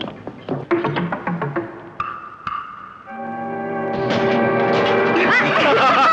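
Film score music: a few short percussive knocks, then from about three seconds in a sustained chord that swells steadily louder.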